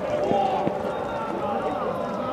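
Men's voices speaking over the sound of a football match played in an empty stadium, with a few faint knocks.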